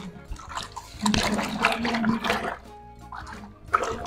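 Hands stirring and sloshing a soap mixture in a plastic basin, in irregular swishes, while salt is dissolved into it to thicken it. A voice hums a low held note about a second in.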